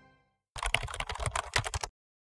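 Computer keyboard typing sound effect: a rapid run of key clicks starting about half a second in and stopping just before the end, after the last of the intro music fades out.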